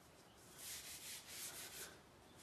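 Light hand sanding of a wooden arrow shaft: a folded abrasive sheet squeezed gently around the Douglas fir shaft and drawn along it in several faint rubbing strokes, knocking high spots off the sealer coat between finish coats.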